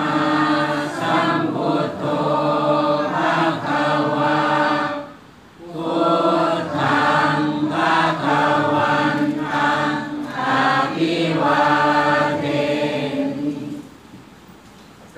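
Buddhist chanting by a group of voices in unison, in long held phrases, with a short breath-pause about five seconds in.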